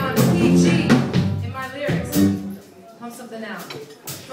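Live band of keyboard, drum kit and guitar playing, with a woman's voice at the microphone over it and sharp drum or cymbal strokes.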